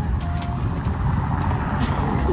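A car passing close alongside on a brick-paved street: a steady low rumble of engine and tyres on the bricks.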